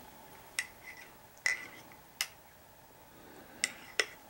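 A spoon clinking against a teacup: five or six light, ringing clinks, unevenly spaced.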